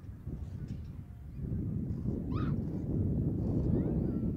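Wind buffeting the microphone in open ground, a low rumble that grows stronger about one and a half seconds in. A brief high-pitched call sounds over it just past halfway.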